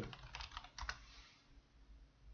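Computer keyboard typing: a short run of faint key taps in the first second, then quiet room noise.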